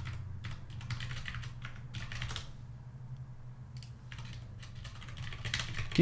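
Typing on a computer keyboard: clicking keystrokes in short bursts with pauses, while code is being edited.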